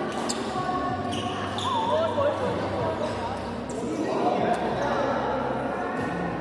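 Badminton rackets striking shuttlecocks in a series of sharp cracks, with sneakers squeaking on the wooden court floor about two seconds in, over chatter in a large echoing sports hall.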